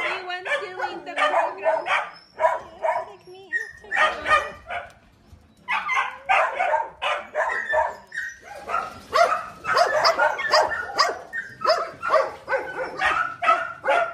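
Several dogs barking over and over, with a short lull about five seconds in and then faster, overlapping barking through the second half.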